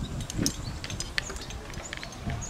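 Quiet outdoor ambience with scattered light clicks and taps, and a soft low thud about half a second in.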